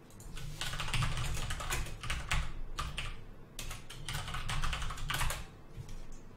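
Typing on a computer keyboard: quick runs of keystrokes broken by short pauses, starting just after the beginning and stopping shortly before the end.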